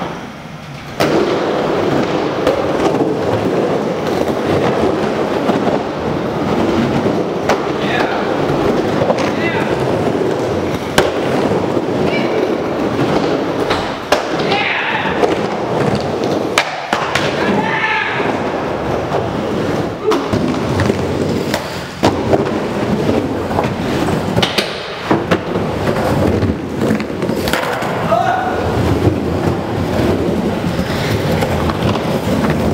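Skateboard wheels rolling and carving around a wooden bowl in a steady rumble, broken by frequent sharp clacks of the board against the wood. Voices call out now and then over it.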